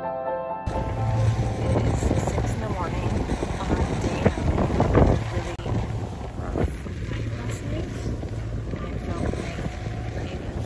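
Strong wind buffeting the microphone on the deck of a sailing catamaran at sea: a loud, gusty rush, strongest about halfway through. Background music cuts off under a second in.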